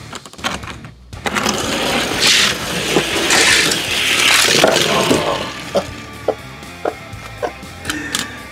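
Die-cast toy cars rolling down an orange plastic Hot Wheels track: a rushing whir of small wheels on plastic starts suddenly about a second in, swells and fades. A few light clacks follow as the cars come off the track and stop.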